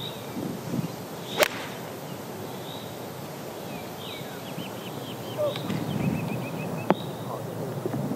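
Golf iron striking the ball from the tee: a single crisp, sharp click about a second and a half in. A second sharp click follows near the end.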